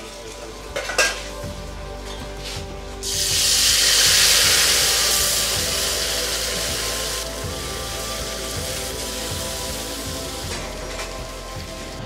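Masala-coated fish pieces dropped into a wok of hot oil for deep-frying. A sudden loud sizzle starts about three seconds in and slowly fades to a steady, quieter sizzle.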